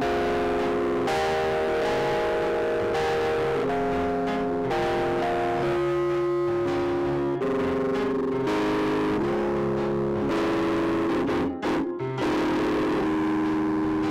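Electronic stage keyboard playing held chords that change every second or so, with a short break near the end.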